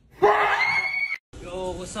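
A woman screaming in fright for about a second, the pitch rising and then held high, cut off abruptly.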